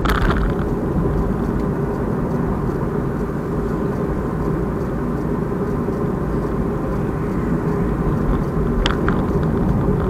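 Steady rumble of a car driving at road speed, heard from inside the cabin: engine and tyre noise. Two short sharp clicks just before the end.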